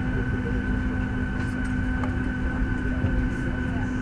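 Steady cabin noise inside a Boeing 737-800 on the ground: a dense low rumble with a steady low hum and a thin, higher steady tone. The rough low end comes from a faulty suction-cup camera mount on the window.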